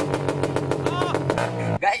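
Small motorcycle engine running loudly through a long makeshift straight exhaust pipe, giving a fast, even train of pops (rapid backfire). It cuts off abruptly near the end.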